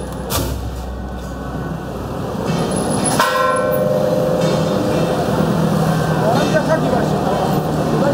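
A procession gong struck twice, about three seconds apart, each stroke ringing on. Underneath are street chatter and a steady engine drone that grows louder in the second half.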